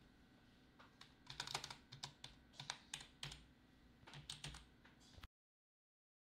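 Keys of a mechanical keyboard being typed in irregular runs of sharp clacks, starting about a second in and stopping abruptly a little after five seconds.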